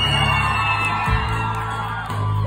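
Live band music with acoustic guitars and a steady bass; a voice slides up into a long high held note that fades about a second in.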